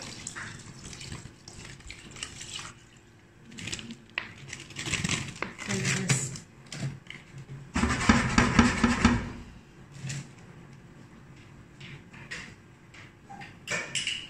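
Milk poured from a plastic bottle over raw rice in a clay pot, with knocks and scrapes of the pot against a metal tray. The loudest burst of handling noise comes about eight seconds in.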